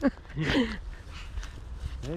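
A man's short wordless vocal sound about half a second in, falling in pitch, over a low steady outdoor rumble.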